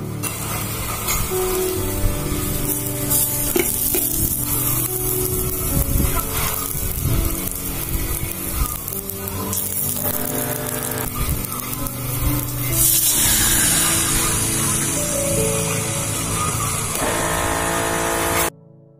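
Sliced garlic sizzling in oil in a small electric cooking pot, under background music. The sizzle grows louder about thirteen seconds in.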